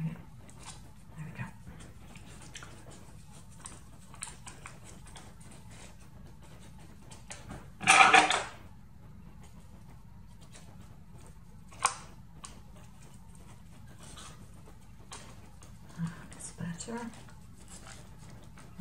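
Paper and cardstock being handled and trimmed with scissors: quiet rustles and small clicks, with one louder rasp of about half a second around eight seconds in and a sharp click a few seconds later.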